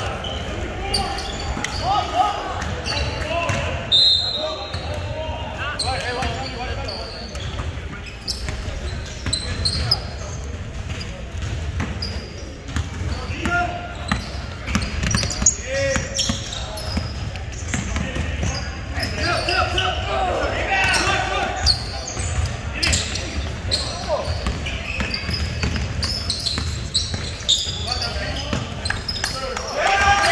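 Basketball bouncing on a hardwood gym floor during play, scattered knocks, with players' and onlookers' voices echoing around the large gym.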